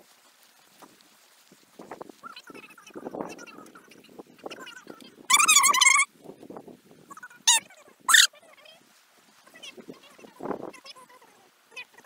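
An animal's call: one high, wavering cry lasting under a second about five seconds in, then two short, sharp calls a couple of seconds later.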